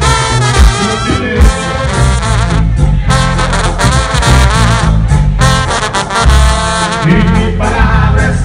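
Live Mexican banda music, played loud: a trumpet and trombone section carries a wavering melody over a heavy bass and a steady drum beat.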